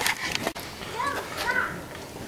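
A child's voice in the background, calling out in short high rising-and-falling sounds, with a couple of sharp clicks near the start.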